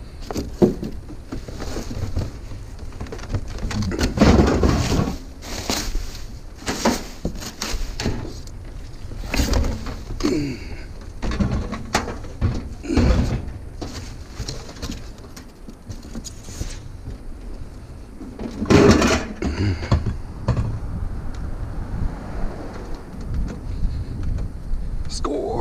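Cardboard box and styrofoam packing scraping, rustling and squeaking against a microwave as it is pulled out of its box and carried, with repeated knocks and thumps; the loudest bursts come about four seconds in and again near nineteen seconds.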